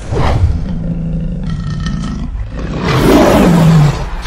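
Lion roar sound effect: one long, low roar that starts suddenly, grows louder near the end as its pitch falls, and then cuts off.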